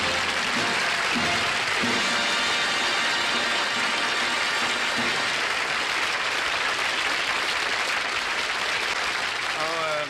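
Studio audience applauding steadily, with the band's play-off music faintly under it in the first few seconds.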